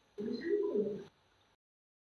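A single short, low-pitched bird call lasting just under a second.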